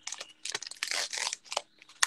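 Foil Pokémon booster pack wrapper crinkling and crackling as it is opened, a dense run of rustles and small crackles that dies away after about a second and a half.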